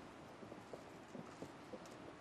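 Faint, irregular footsteps of several people in hard-soled shoes on a boardwalk, a few knocks a second.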